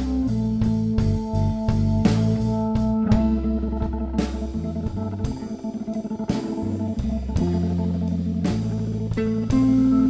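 Live blues band playing an instrumental passage without vocals: electric guitar and bass over Hammond organ and drums, with long held notes.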